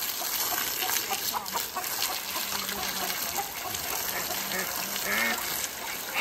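Water from a garden hose spraying in a steady hiss, splashing onto an alpaca and wet ground, with chickens clucking now and then.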